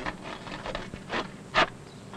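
A few sharp, irregular taps and clicks of a hand tool on stone, the loudest about one and a half seconds in.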